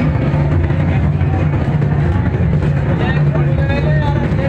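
Street noise of a Muharram tazia procession: a loud, steady low drone with a crowd's voices mixed over it, a few voices standing out near the end.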